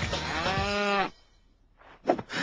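A single moo, about half a second long, rising then falling in pitch, over music. The moo and the music cut off together about a second in.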